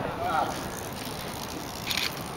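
Voices of people talking nearby over a steady outdoor noise bed, with a short clatter just before the end.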